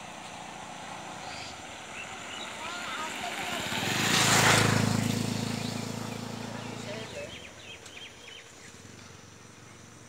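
A motor vehicle passes close by: its engine and road noise grow louder to a peak about four and a half seconds in, then fade away over the next few seconds.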